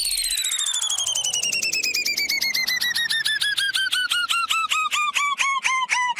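Synthesized electronic sound effect: a pulsing, beeping tone that falls steadily in pitch, its pulses gradually slowing and becoming more distinct.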